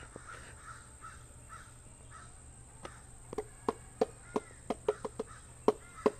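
A bird calling: an irregular run of short, sharp calls, about three or four a second, starting about halfway through.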